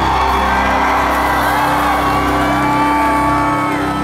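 Live symphonic metal band with keyboards holding long sustained notes while a high line bends up and then falls away, with crowd whoops and shouts over the music. The sound begins to fade near the end.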